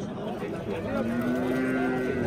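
A head of cattle lets out a single long, low moo, starting under a second in and held steady for over a second.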